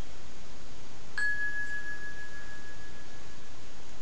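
A single bell-like ding about a second in: one clear high tone that fades away over about two and a half seconds, over a steady background hiss.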